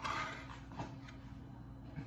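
A brief scraping rustle and a light knock as hands handle a plate of chopped salad on a wooden cutting board, then only a low steady background hum.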